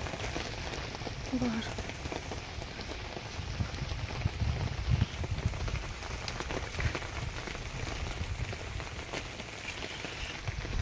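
Steady rain falling on the forest around the camp, an even hiss of drops.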